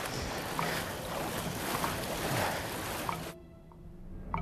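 Splashing of legs wading through shallow water, a steady wash of water and wind noise that cuts off abruptly a little over three seconds in. A few faint ticks are heard under it.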